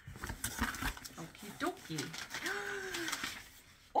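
Rustling, crinkling and light knocks of packaging as things are handled inside a cardboard shipping box, with a short low vocal sound about two and a half seconds in.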